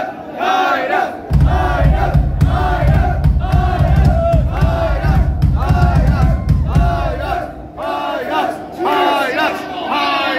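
Concert crowd chanting and shouting in a repeated rhythm. From about a second in until near the end, a loud deep rumble from the band's amplified stage gear sits under the chant.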